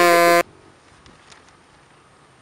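A loud, flat, low-pitched electronic buzzer tone, the kind of 'wrong answer' sound effect laid over a flubbed take, cutting off sharply about half a second in. After it there is only faint outdoor background.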